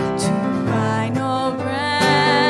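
Live worship band playing a slow hymn: a woman singing held notes with vibrato over acoustic guitar and keyboard.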